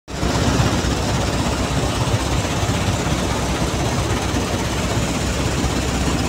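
Hydrocyclone sand-washing plant running: a steady, loud mechanical drone with a constant low hum, from the dewatering screen's vibration motors shaking the wet sand deck.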